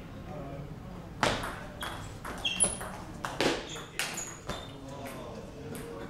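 Table tennis rally: the celluloid ball clicks sharply off the rubber paddles and the table, several hits in quick succession from about a second in until about four and a half seconds. A few short, high squeaks come in among the hits.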